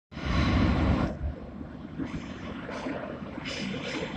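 A Moskva (81-765) metro train approaching through the tunnel: a low, steady rumble with air rushing ahead of it along the platform. There is a loud rush of noise in the first second, then quieter rumble with short hissing surges.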